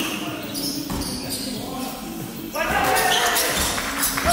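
A basketball being dribbled on a hardwood gym floor, each bounce echoing around the hall; the sound gets louder from about two and a half seconds in.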